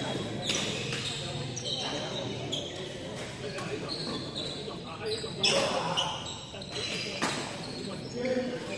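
Badminton rackets hitting a shuttlecock several times, sharp irregular hits about a second apart with the loudest past the middle, echoing in a large sports hall.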